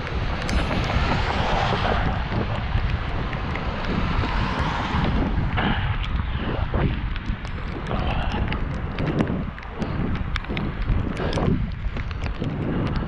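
Wind buffeting the microphone of a bicycle-mounted camera, with tyre hiss on wet pavement and scattered clicks as the bike rolls over cracks. A car passes on the wet road during the first few seconds, swelling the hiss.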